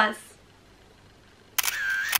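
A short sound effect added in editing, about one and a half seconds in: a half-second burst of hiss with a thin steady tone running through it. Before it there is a second of quiet room tone.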